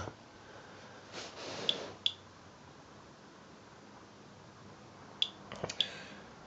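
Inspector Alert Geiger counter clicking at random for single radiation counts at a background-level reading: a couple of short high chirps about two seconds in and a quick cluster of three near the end. About a second in there is a soft breath or sniff.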